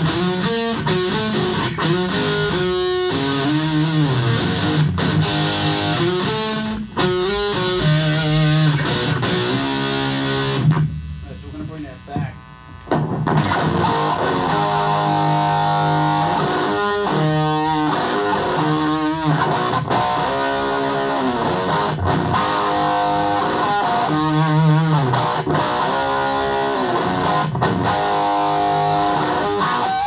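Electric guitar played through an Orange Crush Micro amp into a Hartke 4x12 cabinet: chords and picked note lines, with a short quieter spot about eleven seconds in where the notes die away before the playing picks up again.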